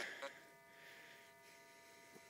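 Near silence: faint outdoor background with a thin steady high hum and one small tick about a quarter second in.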